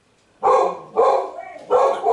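A dog barking three times, about half a second apart, each bark sharp at the start and quickly fading.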